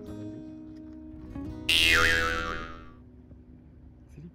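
Soft background music, with a loud added editing sound effect that cuts in suddenly about two seconds in. The effect's pitch wavers up and down, and it fades away over about a second.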